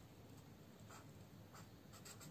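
Very faint scratching of a felt-tip marker on paper as a short label is written, a few light strokes against near silence.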